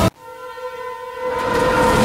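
Train horn sounding one held chord that swells louder as the train approaches, with the noise of the oncoming train building over the last half second or so.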